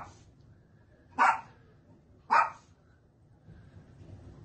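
A dog barking: three short single barks about a second apart, with quiet between them.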